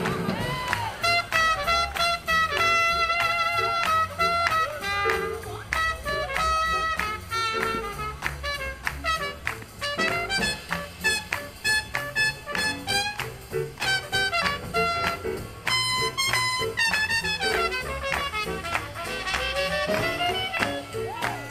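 Live swing big band playing up-tempo jazz for dancing, with trumpets and saxophones carrying the melody over a steady beat.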